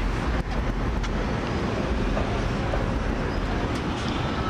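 Steady low rumble of road traffic outdoors, with a few faint clicks.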